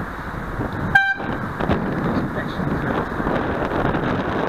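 A short horn toot, one brief pitched blast about a second in, over a steady rush of wind and road noise.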